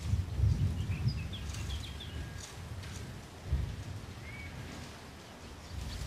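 Outdoor golf-course ambience: wind rumbling on the microphone in gusts, with a few short bird chirps.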